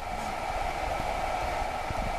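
Steady background hiss and hum, even throughout, with no distinct events.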